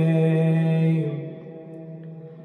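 A man's solo voice chanting a Muharram lament, holding one long sung note that fades about a second in to a quieter, low held hum.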